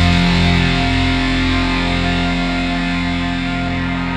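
Instrumental post-metal music: a distorted electric guitar chord left ringing and slowly fading away.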